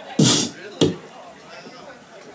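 Two loud thumps about half a second apart, the first longer with a hiss, the second a short knock.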